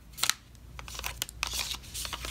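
Clear plastic packaging sleeve crinkling and rustling in the hands as a nail stamping plate is slid out of it, with a few small sharp clicks.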